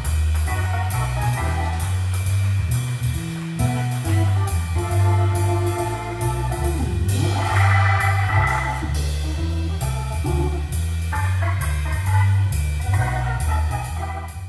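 Live jazz trio music: an electric keyboard playing chords over a walking low bass line, with a drum kit keeping time on the cymbals.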